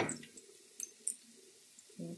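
Faint soft squelching of a metal spoon stirring wet cutlet mince in a plastic bowl, with two light clicks a little under a second in.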